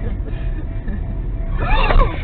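Low, steady rumble of a car driving, heard inside the cabin. Near the end a loud, high sound wavers up and down.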